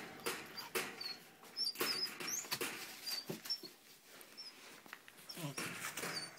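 Puppy whimpering in a series of short, high-pitched squeaks, amid clicks and rustling from the wire crate and its bedding.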